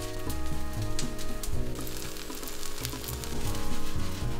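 A Korean zucchini pancake frying in oil in a skillet, sizzling steadily with fine crackles.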